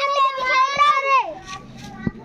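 A child's voice drawn out in one long, steady call lasting about a second and a half, then dropping away.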